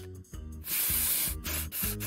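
Cartoon hissing puffs, a long airy 'fff' about a second in and a shorter one near the end, as the puffs of cloud appear, over a light music backing with low bass notes.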